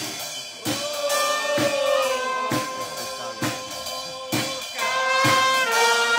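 A small live band playing: a trumpet holding long notes over a drum kit struck in a steady beat, a little under once a second.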